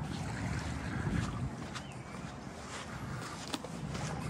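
Wind buffeting the microphone in a low, uneven rumble over steady outdoor ambience, with a few faint ticks scattered through it.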